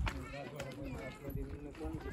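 Voices of people talking indistinctly, with the scuffing steps of someone walking over dirt and stone.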